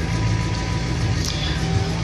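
Ford Econoline ambulance's diesel engine idling steadily while it warms up after a cold start, heard from inside the cab.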